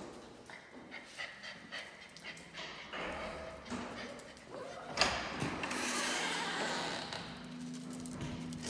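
Footsteps and small knocks of someone walking through a barn, then a sharp knock about five seconds in as the exterior door is opened, followed by a rush of noise. A low steady hum comes in near the end.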